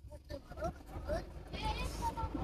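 Faint, indistinct voices heard from inside a car, over a low steady rumble.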